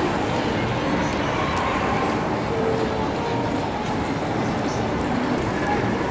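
Steady background noise of a busy shop, with indistinct voices and faint music.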